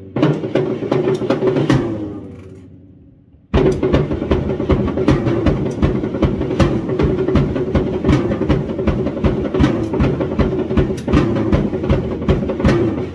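Acoustic drum kit and cymbals played freestyle. A run of hits rings out and dies away about two seconds in. After a short gap, a fast, steady groove starts again about three and a half seconds in.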